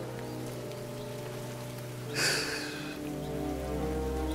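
Dramatic background score holding sustained low notes, with a short hissing rush of noise about two seconds in.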